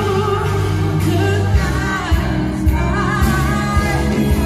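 A live rock band playing, with electric guitar, bass and drums under singing.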